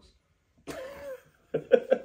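A man laughing: after a short silence, a breathy burst of laughter about two-thirds of a second in, then a run of quick rhythmic 'ha' pulses near the end.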